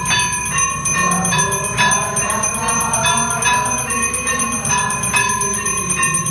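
Temple bell rung continuously for aarti, struck about three times a second, each strike ringing on at the same pitch.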